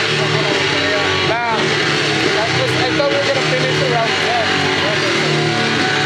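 Loud, heavily distorted live music: a dense, noisy backing with a pulsing low bass pattern, and a shouted, screamed vocal over it, most prominent about a second and a half in.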